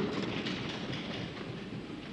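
Steady room noise of a large debating chamber, a soft even hiss that eases off slightly over the two seconds.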